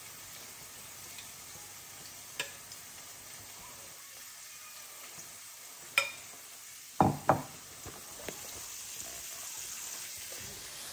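Saltfish fritter batter frying in hot oil in a pan, a steady sizzle, with light clicks of a spoon scooping batter. Two loud knocks close together about seven seconds in, from the spoon and batter bowl being handled.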